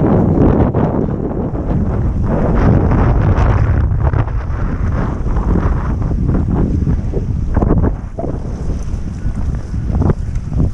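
Wind buffeting the microphone of a camera carried on a foiling stand-up paddleboard, with water rushing and splashing. The rumble is loud and steady, easing slightly about eight seconds in.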